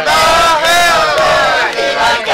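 A group of teenagers singing together loudly in unison, in held phrases with short breaks between them.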